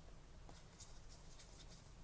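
Faint rustling and sliding of Pokémon trading cards being shuffled through by hand, with a few soft scrapes of card on card.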